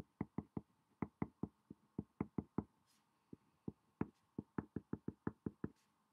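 Marker tip tapping and stroking on paper over a hard desk while block capital letters are written: a quick, irregular run of short, sharp taps, about four a second, with a brief pause near the middle.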